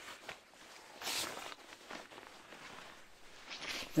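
Poncho fabric and cord rustling as they are handled, in a few short soft bursts, the loudest about a second in.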